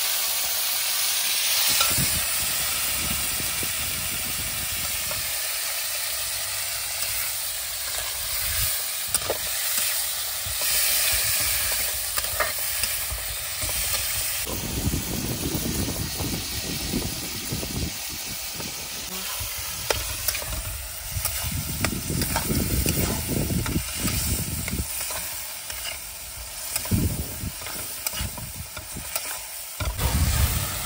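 Chopped tomatoes and masala frying in a metal kadai with a steady sizzle, while a spatula stirs and scrapes against the pan with an occasional sharp knock.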